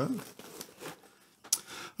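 Light handling noise: hands rustling against a padded recorder bag and its cables, with small clicks and one sharper click about one and a half seconds in.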